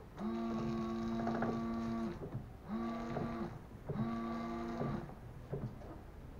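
A car's electric windscreen-washer pump whining in three bursts, the first about two seconds long and two shorter ones, as the washer is worked to test a freshly unblocked jet, with the wipers sweeping and knocking across the wet glass.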